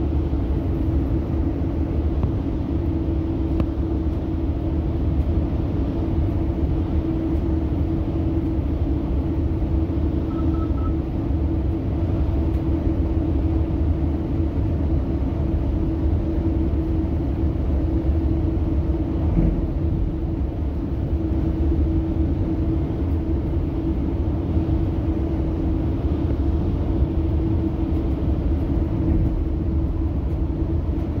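Steady rumble of a Metrolink passenger train rolling along the line, heard from inside the coach, with a constant low droning hum.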